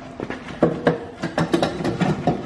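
Irregular metallic clanks and knocks from the heavy brake drum and hub of a five-ton Rockwell truck axle being worked loose by hand.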